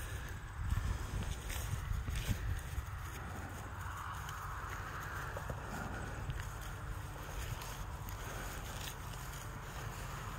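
Quiet outdoor sound of footsteps on grass, over a steady low rumble of wind on the microphone, with a few faint ticks.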